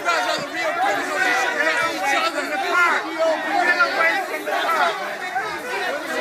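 Many voices talking at once over one another in an outdoor crowd of protesters and police, a steady babble with no one voice standing out.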